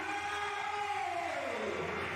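A pitched tone gliding steadily down in pitch over nearly two seconds, over faint steady background noise.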